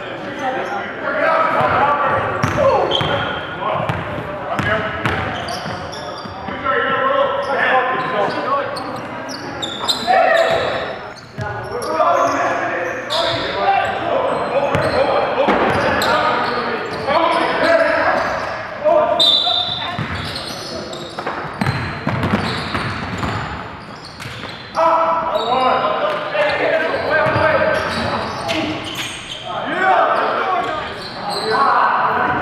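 Basketball being dribbled and bouncing on a gym floor during play, with repeated short impacts, under indistinct shouting and talk from the players that echoes around the gymnasium.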